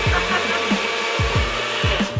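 Blender running at full speed, blending a thin liquid of lemon juice, water and chilies, and switching off right at the end. A music track with a steady drum beat plays underneath.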